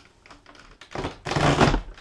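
Fellowes Starlet 2 comb binder's punch handle pushed down firmly: a short crunching thunk about a second in as its row of punch pins cuts the binding holes through the paper.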